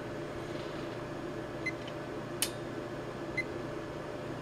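A steady low electrical hum with a few light clicks, the sharpest about two and a half seconds in: presses on the buttons of a Kill A Watt EZ plug-in power meter as it is switched to its power-factor reading.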